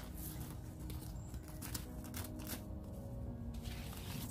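Bivvy fabric and a clear PVC door panel rustling and crinkling as they are handled and the panel's sides are stuck down, a run of quick scuffs and crackles that thins out in the last second or so.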